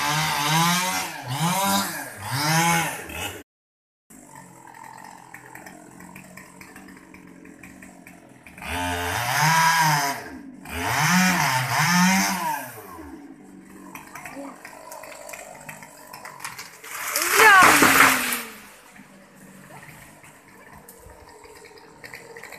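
Small two-stroke chainsaw (Stihl 020T) revved up and down in short repeated blips while cutting through the mango trunk, ticking over at lower revs in between. About seventeen seconds in comes the loudest sound: a crash of splitting wood and branches and leaves as the tree falls.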